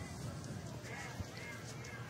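Faint, steady stadium crowd ambience picked up by the broadcast's field microphones, a low murmur with no single event standing out.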